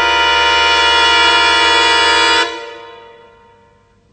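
A loud, sustained brass chord in music, held steady and then released about two and a half seconds in, dying away to near quiet.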